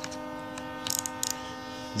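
A steady background hum made of several fixed tones. A few light metallic clicks come about a second in as a steel socket, extension and ratchet are handled.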